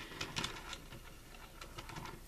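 Faint light clicks and scrapes of a fashion doll's small plastic roller skates being moved across a tabletop, with a few clicks in the first half second and quieter rubbing after. The wheels barely turn, so the skates drag more than they roll.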